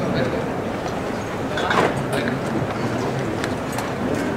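Steady murmur of a street crowd around a Holy Week float, with a short voice heard about two seconds in.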